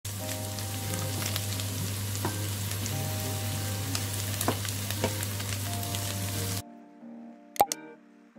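Goat meat with onions and green peppers sizzling in a frying pan as it is stirred with a wooden spatula, with small scraping ticks and a steady low hum under quiet music. About six and a half seconds in the sizzle cuts off suddenly, leaving soft music notes and a couple of sharp clicks near the end.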